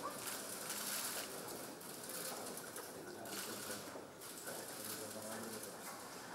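Indistinct murmur of several voices over a busy room's background noise, with no clear words.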